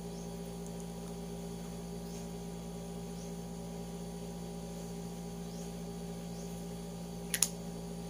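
Steady low electrical hum, with a short sharp double click near the end.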